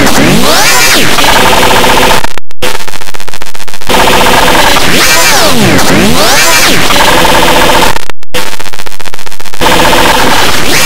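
Extremely loud, heavily distorted and clipped audio from an effects edit, a harsh noisy wash. It is swept twice by a pitch that dives from high to low and climbs back up. The sound cuts out briefly twice, once a little before the halfway point and once near the end.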